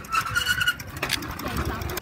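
A child's bicycle squeaking in short repeated squeaks as it is pedalled, over wind noise on the microphone. The squeaking stops just under a second in.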